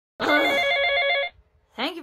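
A telephone ringing: one rapidly warbling electronic ring lasting about a second, then it stops.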